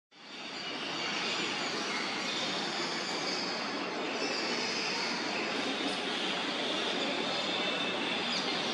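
Steady outdoor ambience: an even rushing noise that fades in over the first second, with faint high bird chirps now and then.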